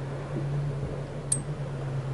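A steady low mechanical hum under a light even hiss, with one short, sharp high click a little past halfway.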